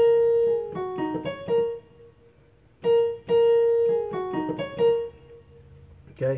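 Portable digital keyboard with a piano voice playing a single-note melody twice. Each phrase opens on a repeated A-sharp and steps down through G-sharp, F-sharp, D-sharp and C-sharp to a low A-sharp, with a pause of about a second between the two.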